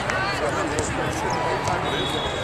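Overlapping chatter of spectators and players in a large indoor sports arena, with a sharp knock of a volleyball being hit or bounced right at the start.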